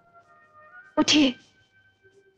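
A short, sharp human vocal burst about a second in, over faint, held notes of background film music.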